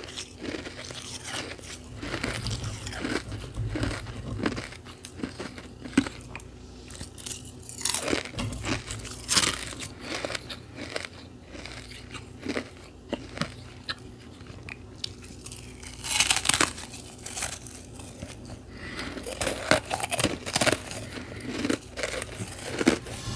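Close-up biting and chewing of frozen carbonated ice pillow, a crisp, irregular crunching that runs on throughout, with louder clusters of bites about a third of the way in, around two-thirds through and near the end.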